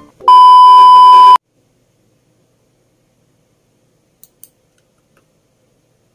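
A single loud, steady electronic beep lasting about a second, followed by a pair of faint clicks about four seconds in.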